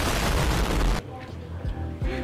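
Explosion sound effect: a loud blast of dense noise that cuts off suddenly about a second in, over background music.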